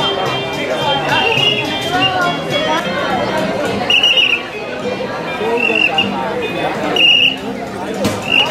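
Several short, high toots on a clown's mouth whistle, the loudest about four seconds in and about seven seconds in, over crowd chatter.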